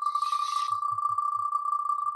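Spinning prize wheel's electronic ticking sound effect: rapid ticks at one high pitch, running together into a fluttering tone while the wheel turns fast.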